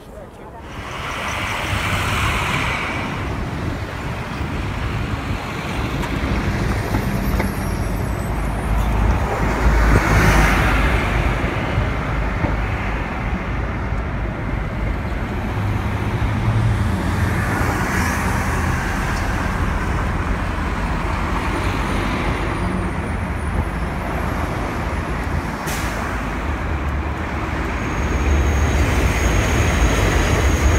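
City street traffic: bus and car engines running and passing, a steady low rumble with a few louder swells as vehicles go by.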